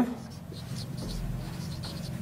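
Marker pen writing on a whiteboard: a run of short, faint strokes over a steady low hum.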